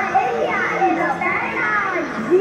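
Many children's voices chattering and calling out at once, overlapping high-pitched voices with no single speaker standing out.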